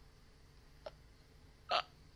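A single short vocal burst from a woman with her hands held over her face, about three-quarters of the way through, with a fainter click a second earlier.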